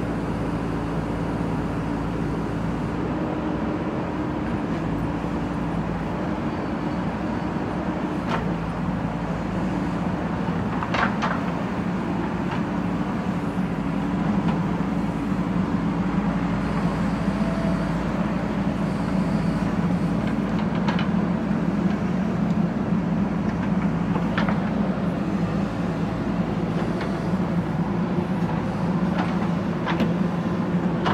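JCB backhoe loader's diesel engine running steadily while the backhoe arm works, its note getting louder and heavier from about halfway through. A few sharp knocks come through, the bucket striking brick rubble.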